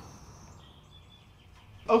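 Quiet workshop background with faint thin high tones, one brief and one held for about a second. A man's voice starts right at the end.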